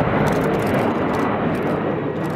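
Boeing 747-400 airliner's four jet engines at takeoff thrust as it climbs away, a steady loud rushing jet noise.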